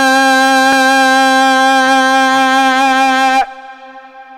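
A man chanting a xasiida, holding one long steady note on a vowel with his hand cupped to his ear. About three and a half seconds in the note drops off sharply, and a faint trace of the same pitch lingers.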